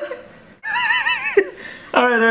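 High-pitched laughter in wavering, squealing bursts: one long burst from about half a second in to about a second and a half, and another beginning at the end.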